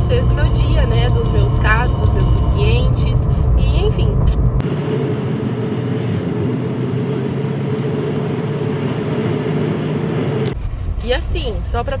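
Car cabin noise while driving, a steady low rumble of engine and tyres. About four and a half seconds in, the rumble cuts out abruptly and gives way to an even hiss of street noise for about six seconds, before the cabin rumble returns.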